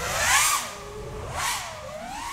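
Motor whine from an FPV drone's NewBeeDrone Smoov 2306 1750kv motors turning Hurricane 51466 props on 6S. The pitch rises and falls with throttle, with louder surges about half a second and a second and a half in.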